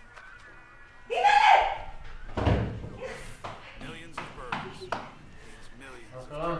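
A loud vocal cry, then a heavy thud like a door slamming shut, followed by several lighter knocks and clatters.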